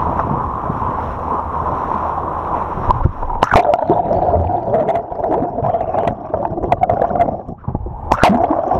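Sea water rushing and splashing along the side of a moving boat, then, about three and a half seconds in, a splash as the microphone goes under the surface: muffled underwater gurgling and bubbling with scattered sharp clicks.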